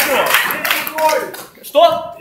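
Audience clapping with voices, dying away over the first second and a half; near the end a single voice calls out loudly.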